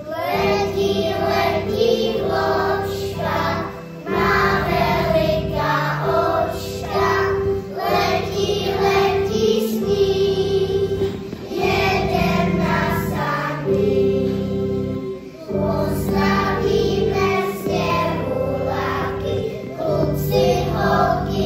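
A group of young children singing a song together, with electronic keyboard chords underneath; the phrases come in sung lines with short breaths between them.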